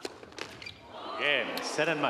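A couple of sharp clicks of a tennis rally ending on a hard court. About a second in comes a loud cry with falling, swooping pitch: the winning player shouting in celebration at match point.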